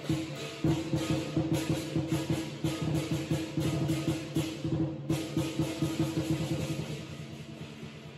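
Lion dance percussion: a big drum beaten in a fast, driving rhythm with crashing cymbals and a ringing gong. It fades out near the end.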